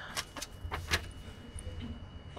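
A few short clicks and rustles close to a handheld microphone, about four in the first second, over a low steady hum from the sound system.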